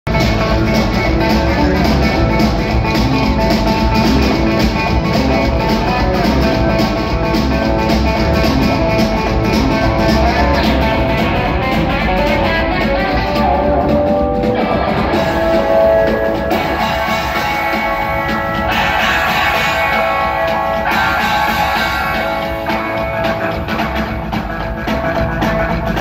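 Live rockabilly band playing, with electric guitar, upright bass and drums, heard from the audience seats in a theatre.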